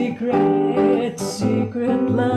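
A woman singing a jazz song accompanied by a nylon-string classical guitar.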